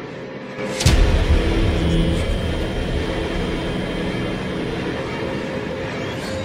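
Horror sound effect: a sudden hit about a second in, then a loud, low rumbling drone that carries on.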